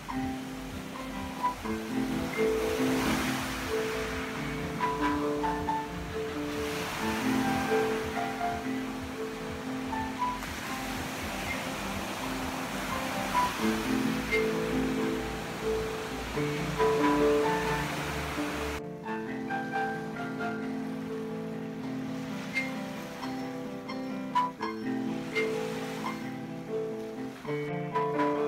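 Slow piano improvisation with ocean waves washing in and out behind it. About three-quarters of the way through the wave sound cuts off suddenly, leaving the piano alone.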